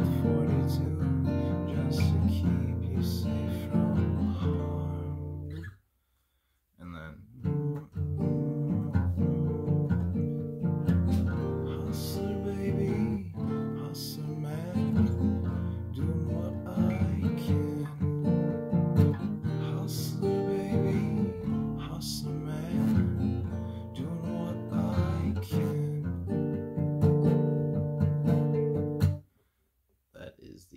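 Steel-string acoustic guitar, capoed at the first fret in standard tuning, strummed and picked through a chord progression. It drops out for about a second around the sixth second, resumes, and stops just before the end.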